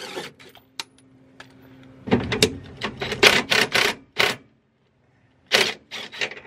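Cordless drill with a socket extension backing out a transmission bolt: a faint motor whir, then a run of sharp clicking and rattling that stops about four seconds in, and one more short burst near the end.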